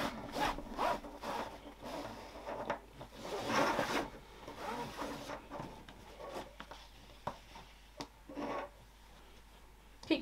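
Webbing strap being pulled through the slots of a plastic side release buckle: a run of rubbing, zip-like pulls, loudest about three and a half seconds in and tapering off near the end.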